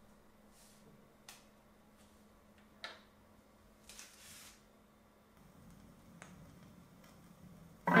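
Faint clicks and a soft swish from a belt-drive turntable being set going, its tonearm moved across so that the platter starts turning on its own. A faint low rumble follows, and rock music from the record starts loudly at the very end.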